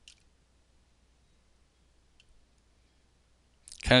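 Quiet room with a single short, sharp click right at the start and a fainter double click about two seconds in: keys being pressed on a computer keyboard, including the Enter key that brings up the next plot.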